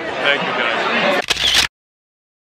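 Men talking, then about a second and a quarter in a short clatter of the camera being handled, after which the sound cuts off abruptly to dead silence.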